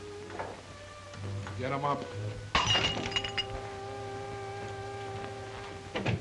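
Dramatic film score music with held chords. About two and a half seconds in comes a sudden crash with a glassy shatter and ringing, and a sustained chord carries on after it.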